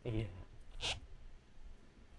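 A person's voice: a short vocal sound with falling pitch at the start, then a brief hiss just under a second in.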